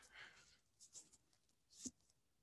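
Near silence in a pause on a video call, with a few faint brief ticks about a second in and a short faint sound near the end.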